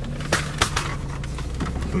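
Steady low rumble inside a car's cabin with the engine running, with two sharp clicks less than a second in.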